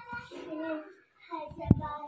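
A voice singing faintly in held notes, with one sharp click near the end.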